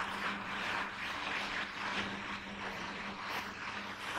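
Marker pen scratching across a whiteboard in quick irregular strokes as equations are written, over a steady low background hum.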